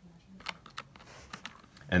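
A few light clicks and taps of a small diecast toy being handled and set down into a plastic playset.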